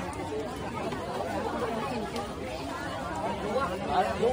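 Many people talking at once in a crowd: continuous overlapping chatter, with no single voice standing out.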